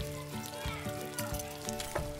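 Background music of held notes that change pitch.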